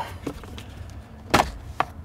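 Plastic dashboard trim around the instrument cluster being handled: one sharp click or knock about a second and a half in, then a lighter click shortly after.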